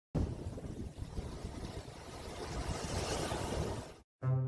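Sea surf breaking and washing up a sandy beach, with wind buffeting the microphone. A steady rumble and hiss, the wash swelling about three seconds in.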